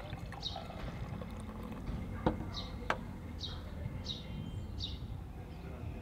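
Beer poured from a bottle into a glass near the start. There are two sharp knocks a little after two seconds and near three seconds. Through it a bird repeats a short falling chirp roughly every 0.7 seconds.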